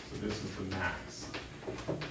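Chalk tapping and scraping on a blackboard as an equation is written, in short strokes and taps.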